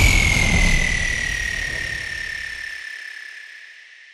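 A synthesized falling-sweep effect in an electronic dance mix: a high whistling tone glides down and settles into a steady pitch over a noise wash and low rumble. The whole sound fades away, and the rumble drops out about three quarters of the way through, as a transition between tracks.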